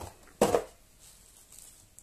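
A single short knock of a black plastic insert tray being set back into a cardboard card-game box, about half a second in, with faint handling after it.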